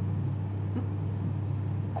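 A pause in the talk with only a steady low hum and faint background hiss in the recording.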